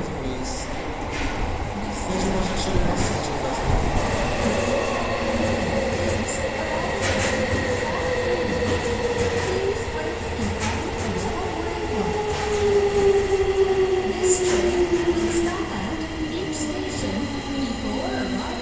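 Tokyo Metro 16000 series electric train pulling into an underground platform and braking. A steadily falling whine from its traction motors drops in pitch as it slows, over a loud rumble of wheels with scattered clicks from the rail joints.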